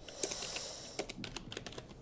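Typing on a computer keyboard: a run of irregular key clicks as a short note is typed, with a soft hiss under the first second.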